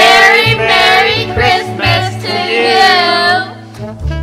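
Children singing together with a woman over instrumental backing music; the singing drops away shortly before the end.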